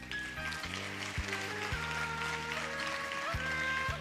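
Soft instrumental music from a keyboard: long held notes that step to new pitches over a low sustained bass, with a few soft low thumps.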